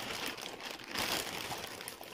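Thin plastic bag crinkling and rustling as hands work it open, with a louder rustle about a second in.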